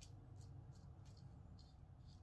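Faint, short scrapes of a GEM G-Bar single-edge safety razor cutting whiskers through lather on the neck, a handful of strokes in quick succession, over a low steady room hum.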